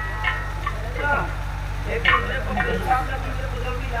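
A voice muttering in short, indistinct snatches over the stage microphones, with a steady low hum underneath.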